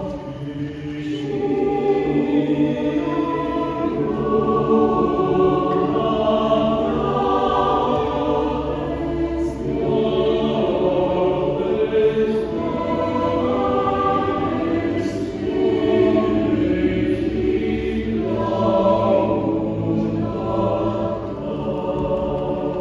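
Mixed choir of women's and men's voices singing sustained chords in a large church, the harmony shifting slowly from chord to chord.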